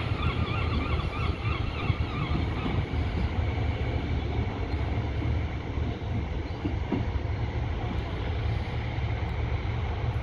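Class 153 diesel railcar's underfloor engine running steadily as the unit draws away, a low rumble. A wavering high squeal sounds over it and fades out about two and a half seconds in.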